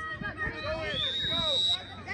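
A referee's whistle blown once as a long, steady high note of about a second, over sideline spectators' voices.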